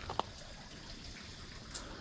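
Faint steady background hiss with a brief soft click shortly after the start.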